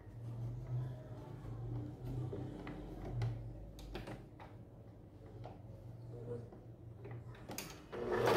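Quiet handling of fabric at a sewing machine: soft rustling and a few light knocks and clicks as cloth pieces are positioned under the presser foot, over a low steady hum that fades after about four seconds.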